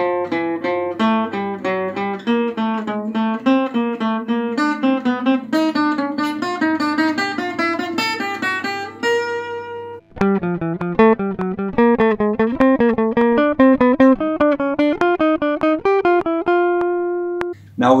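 Acoustic guitar playing a single-note line in even eighth notes, circling each note of the B-flat major scale with its upper neighbour and a chromatic note below, and ending on a held note about nine seconds in. After a short break, an archtop guitar plays the same figure in triplets, ending on a held note near the end.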